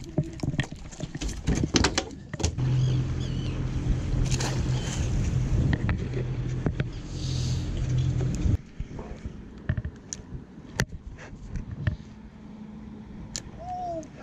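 Knocks and clatter of gear being handled on a fiberglass boat deck, then a steady low motor hum for about six seconds that starts and cuts off suddenly, followed by lighter scattered clicks.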